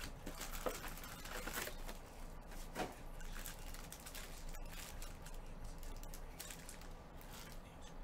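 Foil-wrapped Panini Select card packs being handled and stacked on a table: soft crinkles and light taps, several in the first couple of seconds and one more near three seconds.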